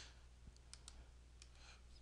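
Near silence over a low steady hum, with a few faint clicks of a computer mouse as a row is selected in a list.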